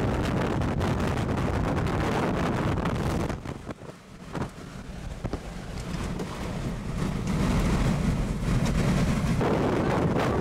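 Strong wind rushing over the microphone. It drops off for a second or two about three and a half seconds in, with a few sharp ticks, then builds back up.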